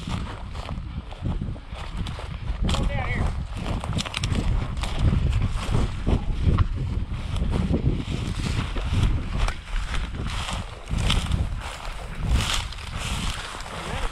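Footsteps through tall dry prairie grass, the stems swishing and brushing against the legs and a chest-mounted camera in a run of short rustles, over a steady low rumble of wind and body movement on the microphone.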